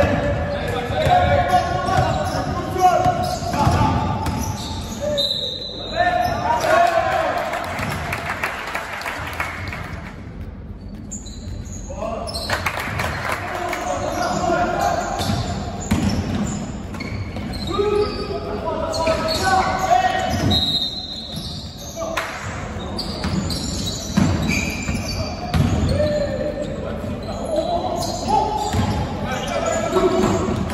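A basketball being dribbled and bounced on a wooden court during play, repeated thuds echoing in a large sports hall, with players' voices calling out over them.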